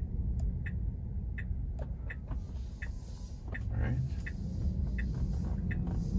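Tesla Model 3 turn signal ticking evenly, about two to three ticks a second, over the low rumble of the car's cabin as it pulls out into a right turn.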